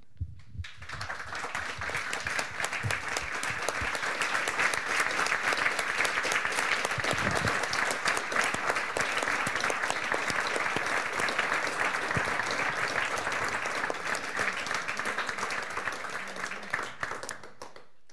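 Audience and panelists applauding: many hands clapping, swelling about a second in, holding steady, then tapering off near the end.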